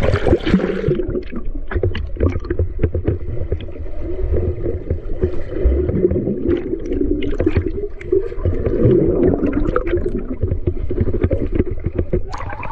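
Water splashing over a camera at a swimming pool's surface for about the first second. Then the muffled churning and bubbling of water heard with the camera held underwater, with many small clicks and knocks.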